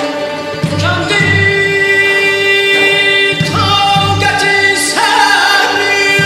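Live string orchestra accompanying a singer's ornamented vocal line, which slides up into long held notes several times, over pairs of low pulses in the bass.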